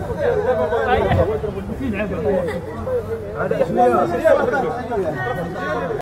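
Several men talking at once, with indistinct, overlapping chatter.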